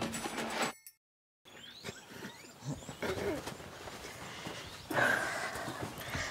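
Background music ending, a moment of dead silence, then faint outdoor farmyard ambience with a few short chirping calls and a faint animal call.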